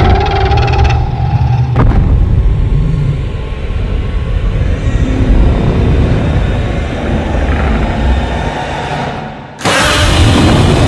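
Deep, heavy rumbling from a monster-film soundtrack, with a steady higher tone over it for the first two seconds and a sharp crack about two seconds in. Loud music cuts in abruptly near the end.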